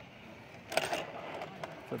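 A short cluster of metallic clinks and rattles about three-quarters of a second in, followed by a couple of lighter clicks: the metal safety carabiners of a ropes-course harness knocking on each other and on the steel cable.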